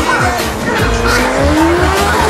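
Drag-racing motorcycle launching and accelerating down the strip, its engine pitch rising steadily, heard under background music with a steady beat.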